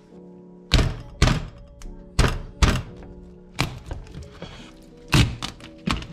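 Kitchen knife cutting through a slipper lobster tail's shell and striking a plastic cutting board: about seven sharp thunks at irregular intervals.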